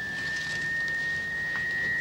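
A telephone line tone in the receiver after the other end has hung up: one steady high tone, edging slightly up in pitch.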